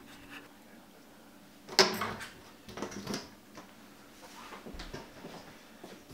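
Handling noise from a foam board panel and PVC frame being moved: a sharp knock about two seconds in, then softer clicks and rustles.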